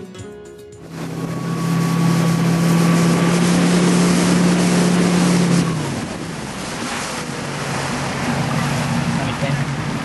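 Motorboat engine droning steadily under a loud rush of water spray and wind, heard from the towboat; about six seconds in the drone drops in pitch and quiets.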